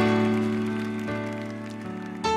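Electronic stage keyboard playing slow, sustained piano-like chords in a live song intro. A new chord is struck at the start, again about a second in and once more near the end, each ringing on and fading.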